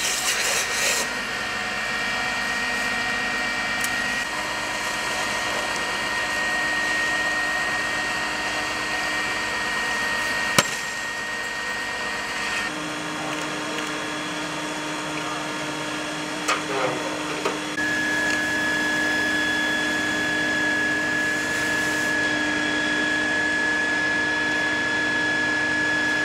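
Steady machine whine and hiss of fire-service pump equipment while a hose sprays water onto a car's burning engine compartment. There is a single sharp knock about ten seconds in.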